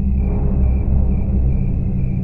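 Deep, steady low rumbling drone of a dark, suspenseful film score, with a faint high tone held above it.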